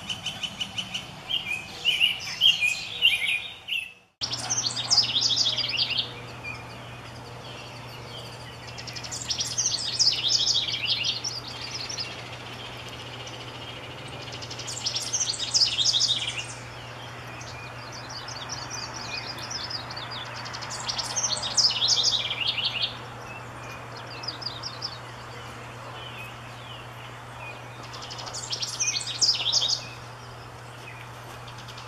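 A house wren singing: from about four seconds in, bursts of rapid, jumbled song about two seconds long, repeated every five or six seconds, over a steady low hum.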